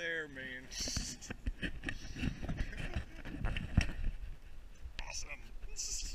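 A man's drawn-out wordless voice trails off about half a second in. Then comes the handling noise of a hand-held action camera: irregular clicks, knocks and rubbing rustles as it is moved and turned around.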